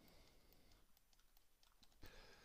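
Near silence: room tone with a few faint, sharp clicks from the computer being operated.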